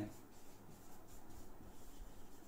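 Faint scratching of handwriting, a pen or marker moving across a writing surface.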